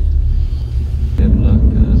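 Low rumble of a car heard from inside the cabin while driving, the engine and road noise growing louder and fuller about a second in.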